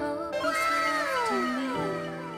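Background music with a cat meow sound effect laid over it: one long call starting about half a second in and falling in pitch.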